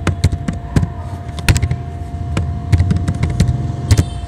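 Computer keyboard typing: about a dozen sharp, irregularly spaced key clicks over a steady low hum.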